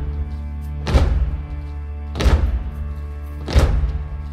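Gospel song instrumental build-up: a held keyboard chord with heavy drum hits about every 1.3 seconds, three of them falling here.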